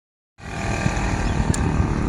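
Steady running of nearby vehicle engines on a busy road, with low rumble from wind on the microphone; the sound cuts in abruptly a moment after the start.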